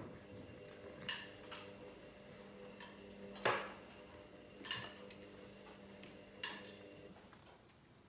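A cat batting a small metal trinket on a carpeted cat-tree platform: about six sharp clinks and taps at uneven intervals, the loudest about three and a half seconds in, over a steady low hum.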